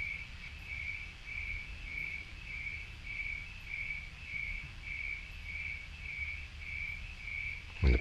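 A cricket chirping steadily, about one and a half chirps a second, over a low background rumble.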